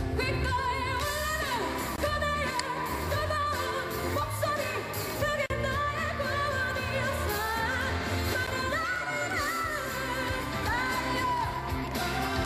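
Female vocalist singing a Korean pop ballad live with band accompaniment, holding long notes with vibrato.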